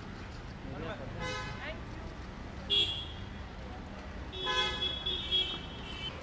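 Vehicle horns honking in street traffic: a short toot about three seconds in, then a longer steady horn blast of about a second and a half near the end, over a low traffic rumble.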